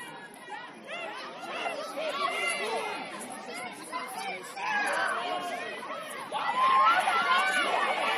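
Many overlapping voices of players and sideline spectators calling out and chattering, with no single voice clear. The shouting gets louder about six seconds in.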